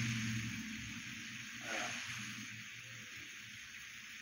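Mostly room tone: a steady hiss, with a low hum that fades out in the first second. One short, hesitant 'uh' from a man a little under two seconds in.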